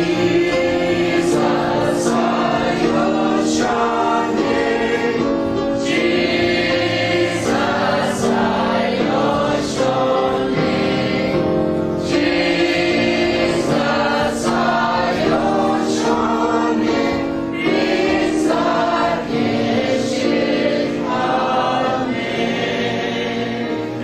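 Many voices singing a gospel hymn together, in long held notes.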